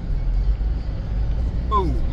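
Steady low rumble of a car's engine and road noise heard from inside the cabin while driving slowly; a man's voice starts near the end.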